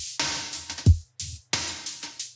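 Electronic drum loop with a deep, layered kick drum, two kick samples stacked, hitting about once a second, and noisy high percussion hits between the kicks. This is the processed version of the drum track.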